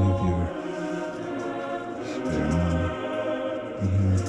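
Choir singing a slow chant in held notes, with deep bass notes that swell and fade every second or two.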